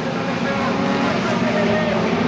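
Several speedway sedans' engines running together as the pack laps the dirt oval, a steady, unbroken engine sound, with spectators' voices mixed in.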